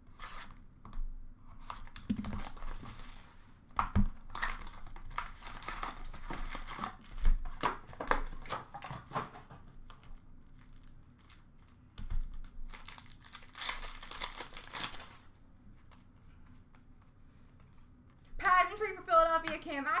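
2021-22 Upper Deck SP Authentic Hockey box and card packs being torn open: several bursts of tearing and crinkling wrapper, with light knocks and clicks as packs and cards are handled.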